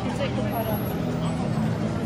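People's voices over a steady low engine hum from a nearby garbage truck.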